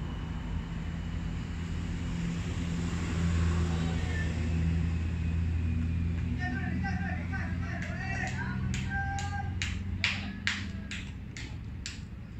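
A vehicle engine drones low, growing louder toward the middle and then fading. In the last few seconds voices call out across the field and hands clap sharply, about three claps a second.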